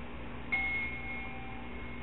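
A single high ringing tone, like a small chime or bell, starting suddenly about half a second in and dying away slowly.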